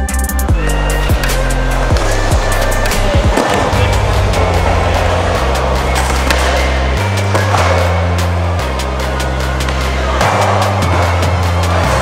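Skateboard wheels rolling on concrete ramps, a rough rolling noise that comes in about three seconds in and swells and fades, over background music with a heavy bass line.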